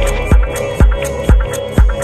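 Afro house dance music playing in a DJ mix. A steady four-on-the-floor kick drum lands about twice a second, with hi-hat ticks between the beats over held synth tones.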